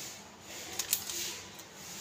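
Faint handling noise: light rubbing and a few soft clicks about a second in, as the phone or bottle is moved.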